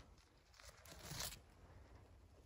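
Near silence, with a faint, short rustle about a second in.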